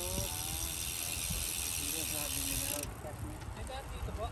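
Bicycle rear hub freewheel buzzing while the rider coasts, cutting off suddenly about three seconds in, over a low rumble of wind on the microphone.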